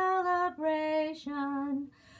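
A woman's voice singing a Christmas carol: held notes that step down in pitch, with a short pause for breath near the end.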